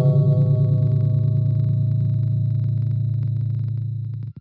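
A single long ringing tone with a deep low hum and higher overtones, fading slowly with a slight fast wavering, like a struck gong used as a sound effect.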